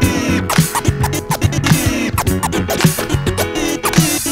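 Vinyl scratching on a turntable over a hip hop beat: a record dragged back and forth by hand in repeated sweeping glides.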